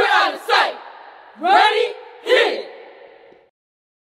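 Cheerleading squad shouting a cheer together in loud, echoing calls: two quick shouts, then two longer ones that rise in pitch, fading out after about three seconds.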